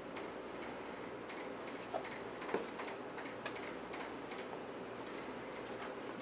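Faint handling noise of a suede sneaker being turned over in the hands: soft rustling with a few small clicks and taps, two a little louder about two seconds in and half a second later, over a low room hiss.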